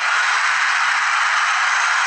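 Cricket stadium crowd cheering a catch that takes a wicket: a loud, steady roar.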